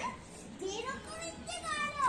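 Children's voices calling out at play, faint, with short rising calls.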